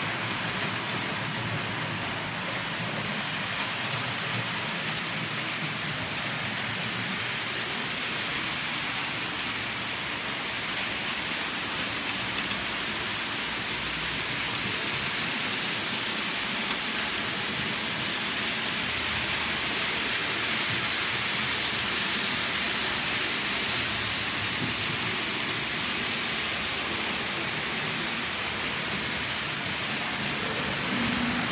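OO gauge model trains running on the layout: a steady whirring rumble of motors and wheels on track, growing a little louder in the second half.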